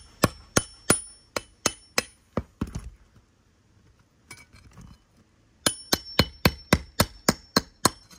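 Hammer tapping a steel pry bar to drive it under asphalt shingle tabs, breaking the shingles' adhesive seal strip. Two runs of quick blows, about three a second, each with a short metallic ring, with a pause of two to three seconds in the middle.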